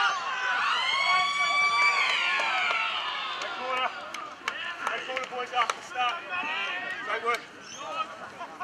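Ground siren sounding for the end of the quarter: one long tone that rises about half a second in, holds for about a second, then falls away by about three seconds in. Shouting voices follow.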